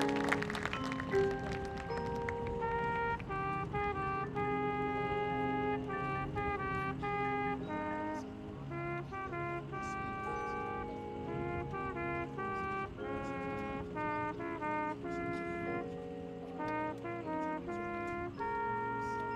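Marching band playing a softer passage of its field show: brass holding sustained chords under a moving melodic line. A loud full-band hit dies away in the first second.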